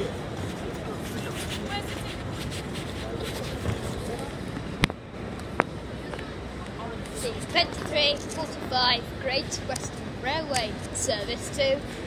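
Crowd hubbub and footsteps in a busy railway station concourse, with two sharp clicks about five seconds in and a voice speaking over the noise in the second half.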